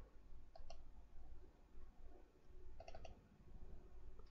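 Computer mouse buttons clicking quietly: a pair of clicks about half a second in and another short cluster of clicks near three seconds.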